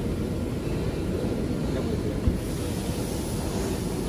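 Maxi-roll tissue paper slitting machine running, a steady low rumble.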